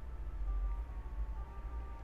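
Faint background music of soft held tones over a low steady rumble.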